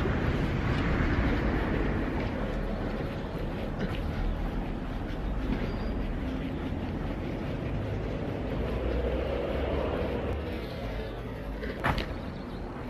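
Wind rumbling and hissing on the microphone outdoors, steady throughout, with a couple of sharp knocks near the end.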